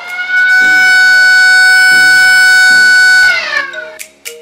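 A ceremonial siren set off by a button press, marking the official opening. It winds up to a steady wail, holds for about three seconds, then winds down near the end.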